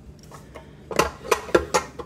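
Metal clinks and knocks as the stainless steel bowl and flat beater of a KitchenAid stand mixer are handled and taken off, with the mixer switched off. Five or so sharp clinks come from about a second in.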